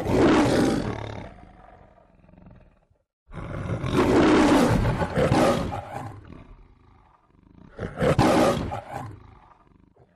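Three lion roars, each starting loud and fading away over two or three seconds: the MGM logo's lion roar.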